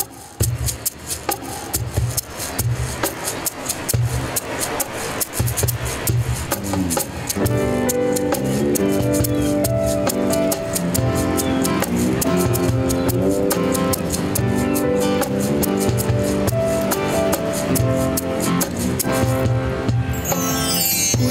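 Live acoustic band's instrumental intro: a cajón keeps a steady beat with a hand rattle clicking along, then about seven and a half seconds in, electroacoustic guitar, electric bass and synthesizer come in and the music fills out.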